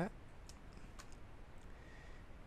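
Two computer mouse clicks about half a second apart, each short and sharp, over quiet room tone.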